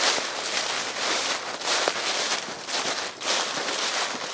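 Footsteps crunching and rustling through a thick layer of dry fallen leaves on a steep slope, in an uneven series of steps.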